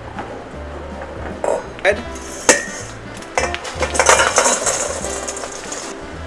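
Stovetop cooking sounds: a few sharp clinks of a utensil against a pan, then about two seconds of butter sizzling as it heats.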